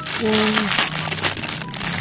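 Clear plastic bag crinkling as it is handled and pulled open.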